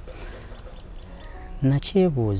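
Insect chirping four times in short, high, evenly spaced pulses, then a man's voice near the end.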